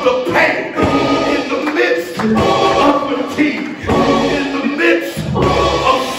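Gospel singing with instrumental backing, a man's voice leading over other voices.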